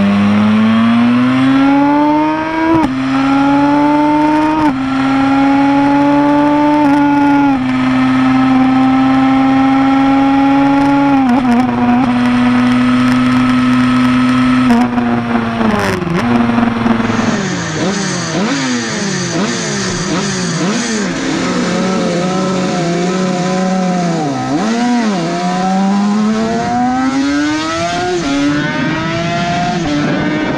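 Suzuki RG500 square-four two-stroke engine heard onboard, accelerating hard and shifting up through several gears, the revs climbing in each gear and dropping at each shift. In the second half the revs rise and fall repeatedly with throttle changes and downshifts.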